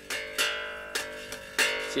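1976 Gibson Thunderbird electric bass played note by note: about four plucked notes, each struck sharply and left to ring with bright overtones.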